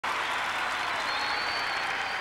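Arena audience applauding, a steady wash of clapping that starts abruptly, with a thin high whistle over it from about a second in.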